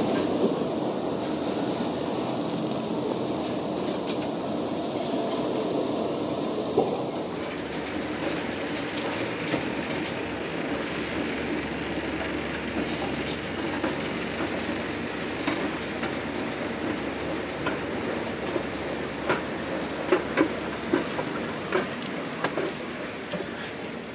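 Walt Disney World Mark VI monorail train moving past the platform with a steady rumble. About seven seconds in the sound changes abruptly to a steadier background hum, with a few sharp clicks near the end.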